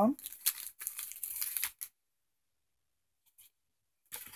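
Clear plastic blister packaging of miniature wooden parts crinkling and crackling as it is handled, for about two seconds, then stopping abruptly.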